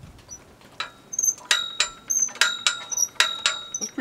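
Metal clinking: rapid, irregular sharp strikes, a few a second, starting about a second in, each ringing briefly at the same bright pitches.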